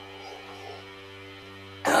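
Steady electrical hum with a buzzy stack of overtones, unchanging in pitch.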